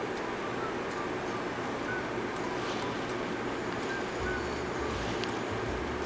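Quiet, steady background hiss with faint, sparse high notes, like a soft background music bed; a faint low hum comes in about four seconds in.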